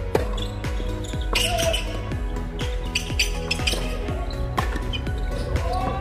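Background music with a steady beat, with a sharp tennis racket strike on the ball just after the start as a serve is hit.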